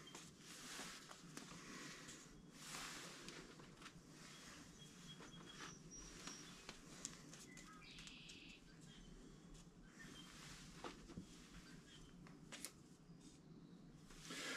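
Near silence: faint rustles and small clicks as potting compost is worked into a plastic cup by hand, with a few faint, brief bird chirps about the middle.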